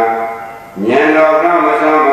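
A monk's voice chanting Pali paritta verses in a slow recitation, holding long notes that step up and down in pitch. He stops for a breath a little before the middle and then goes on.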